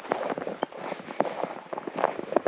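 Footsteps crunching on frozen snow, a quick irregular run of sharp crackling steps.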